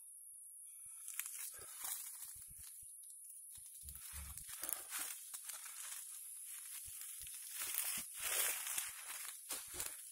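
Dry leaves and twigs crackling and rustling as someone moves through forest undergrowth. The crackles come in irregular clusters that grow busier from about four seconds in.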